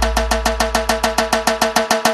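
Electronic dance music: a fast, even pulse of about eight beats a second over a deep held bass, which fades out near the end.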